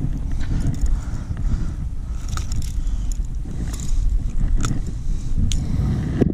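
Steady low rumbling wind and handling noise on a chest-mounted camera's microphone, with a few light clicks scattered through it.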